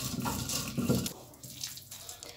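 Cylindrical stone pestle rolled and pressed over wet mashed bean paste on a shil-pata grinding slab: a rough, wet scraping grind that stops about a second in, leaving only faint sounds.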